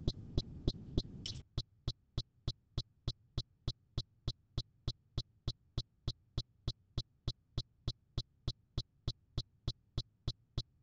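A steady, evenly spaced train of short, sharp electronic clicks, about three and a half a second. Faint hiss lies under the first second or so, then cuts off.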